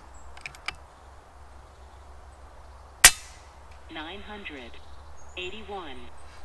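FX Impact M3 PCP air rifle firing a single sharp shot about three seconds in, a chronograph test shot after the hammer-spring tension has been lowered one click, preceded by a few light mechanical clicks. Near the end a chronograph app's voice reads out the velocity through a phone speaker.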